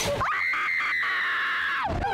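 A drop-tower rider screaming. It is one long, high scream that rises at the start, holds steady for about a second and a half, and breaks off just before the end, as the car is shot toward the ground.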